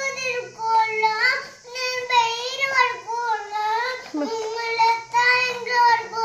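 A toddler's drawn-out, high-pitched sing-song whine, close to tears, held in long wavering phrases.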